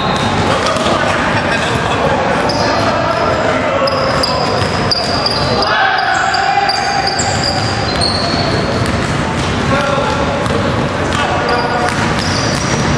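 Basketball game on a hardwood gym floor: the ball bouncing, sneakers giving short high squeaks, and players' voices echoing around the hall.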